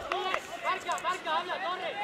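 Several voices shouting and calling across a football pitch during play, including instructions from the bench.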